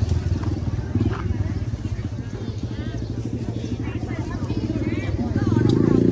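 A small engine running steadily nearby with a rapid low pulsing beat, with faint voices in the background.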